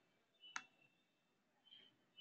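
Near silence, with one faint click of a computer mouse button about half a second in and a faint, brief high tone near the end.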